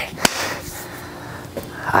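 One sharp click about a quarter of a second in, then a faint steady hum.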